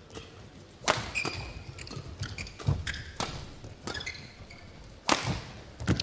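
Badminton rally: sharp racket strikes on the shuttlecock, about seven spread through a few seconds, with short squeaks of court shoes between them.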